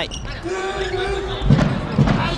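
A basketball bouncing on a hardwood arena court, with a thud about one and a half seconds in and another at the very end. Through the middle a voice holds one long note for about a second.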